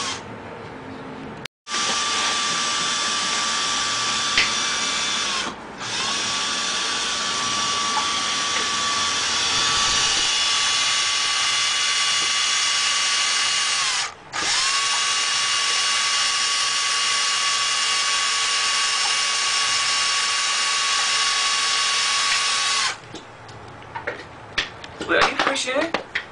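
Electric drill boring holes through wood, running steadily in long stretches. Its pitch sags and picks up again twice as the trigger is eased and pressed. It stops near the end, followed by a few clicks and knocks.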